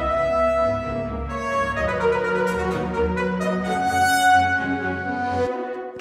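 Sampled four-trumpet ensemble from CineSamples' Cinebrass Sonore playing a phrase of sustained notes, with layered articulations and a sampled brass accompaniment. A brighter, accented note comes in about four seconds in, and the music cuts off shortly before the end.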